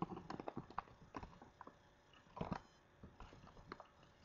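Faint, irregular clicks and taps from a computer mouse and keyboard, about a dozen, with a short cluster a little past halfway.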